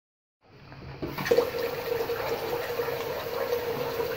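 Single-lever mixer tap turned on, water running steadily into a ceramic bathroom basin. The rush starts about half a second in and fills out about a second in, with a steady tone under the splashing.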